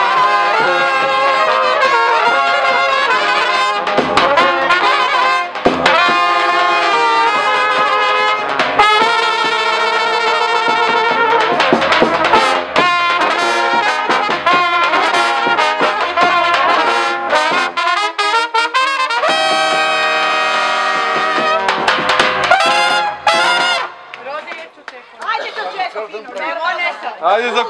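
Serbian street brass band, with trumpets played at close range over a larger brass horn and a drum, playing a tune. The music breaks off about two seconds before the end, leaving voices.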